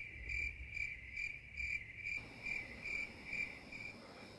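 Cricket chirping sound effect, the stock gag for an awkward silence: an even, high chirp repeating about two and a half times a second.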